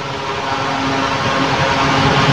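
Steady rushing background noise with a faint hum, growing gradually louder.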